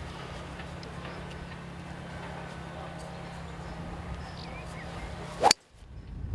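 A golf club swung through and striking the ball from the fairway: one sharp, loud crack about five and a half seconds in, over steady low outdoor background noise.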